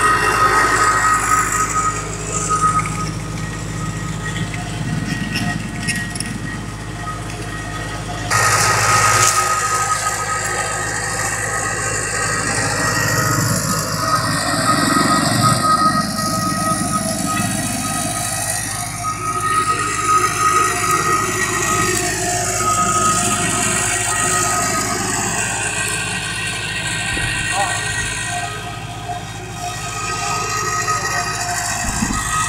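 Machinery running steadily with a constant high whine, getting louder about eight seconds in, under people talking.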